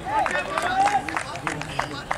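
Men's voices shouting and calling across an outdoor football pitch, several overlapping, with a few short sharp knocks among them.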